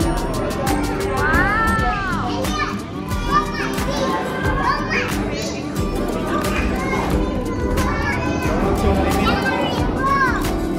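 A young child's high voice calling out and exclaiming several times, with the loudest call about a second in, over other voices and music.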